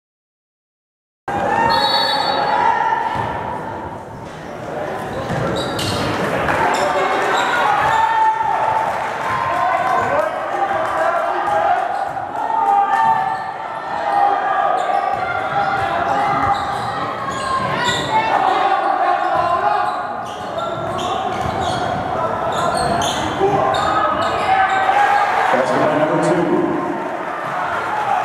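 A high school basketball game in a gym: the ball bouncing on the hardwood floor among players' and spectators' voices in the big hall. The sound cuts in suddenly about a second in, after silence.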